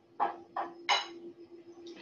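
A spatula scraping and knocking against a mixing bowl while stirring dry cake ingredients: three quick strokes in the first second, the last the loudest, over a faint steady hum.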